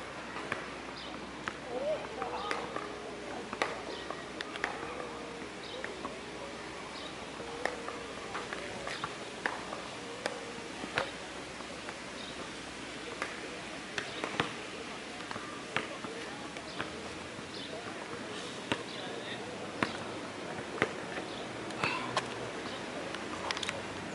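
Outdoor ambience on an open court: a steady background hum with faint distant voices and sharp knocks at irregular intervals, a few seconds apart.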